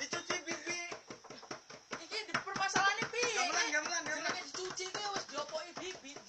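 Men's voices talking over one another, with rapid, irregular tapping and clicking throughout.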